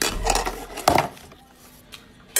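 Two short bursts of rubbing, scraping noise in the first second, the first starting with a low bump.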